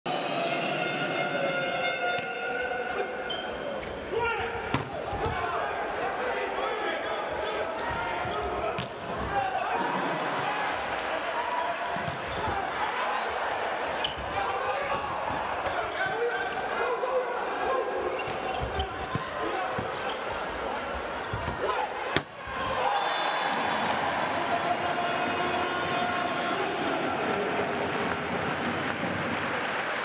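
Sports hall crowd noise with voices and cheering, broken by several sharp smacks of a volleyball being hit, the loudest about 22 seconds in.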